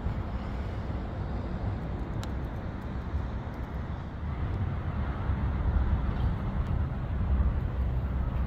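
Outdoor street ambience: a steady low rumble of road traffic, growing somewhat louder about halfway through.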